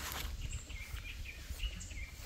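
Small birds chirping in short, repeated calls over a steady low outdoor rumble, with a brief scratchy noise right at the start.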